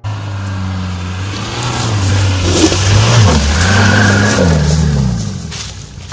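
Volkswagen Golf Mk3 estate's engine revving hard as the car drives past on a dirt track. Its pitch rises, dips briefly about three seconds in, like a gear change, and climbs again before falling away. The car gets louder to a peak around the middle and then fades as it passes, with a hiss of tyres on loose dirt.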